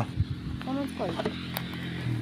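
Short fragments of quiet talking and a couple of low bumps from a handheld phone being moved about, over a steady low hum.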